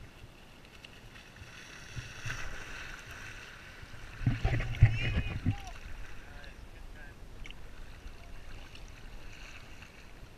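Seawater lapping and sloshing against a camera held at the water's surface, with a louder splash and gurgle about four seconds in that lasts around a second and a half.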